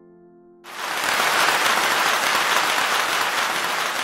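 Soft piano music cuts out about half a second in, and a loud, even wash of hiss-like noise, like applause, takes over.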